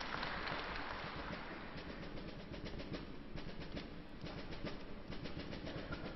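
Audience applause, thinning out to scattered claps toward the end.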